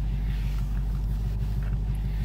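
Steady low rumble of a car running, heard from inside the cabin.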